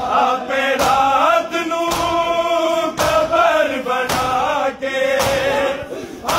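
Crowd of men chanting a noha in unison, with their hands striking their bare chests together in matam about once a second, five beats in all.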